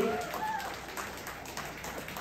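Light applause from a small audience, a thin patter of hand claps, fading after the call for a round of applause.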